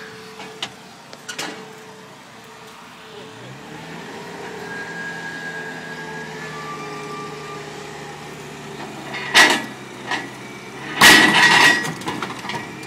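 Ingersoll Rand rough-terrain forklift's engine running steadily as it drives up, growing louder from a few seconds in. Two loud metallic bangs come near the end, about a second and a half apart.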